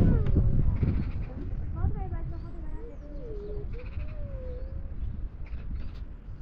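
Small livestock bleating: a few short wavering calls, then a longer wavering one in the middle, over a low rumble.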